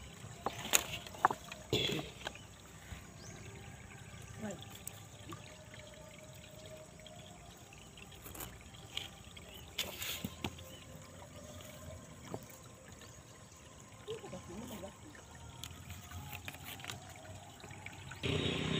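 Faint trickle of a shallow stream running over rocks, with a few short soft knocks and clicks scattered through it.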